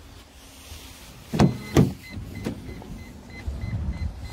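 Toyota Estima van: a couple of loud knocks, then a rapid electronic warning beep, about four a second, starting about two seconds in. It is the beeper that sounds while the power sliding door operates.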